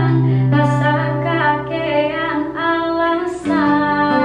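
A woman singing a melody over acoustic guitar accompaniment; the guitar's low notes change about three and a half seconds in.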